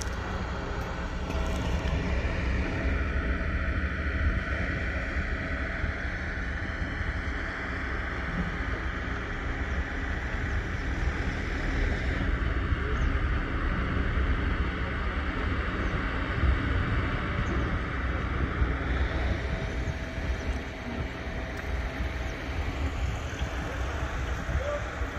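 Steady low engine rumble mixed with wind noise on the microphone, unbroken throughout.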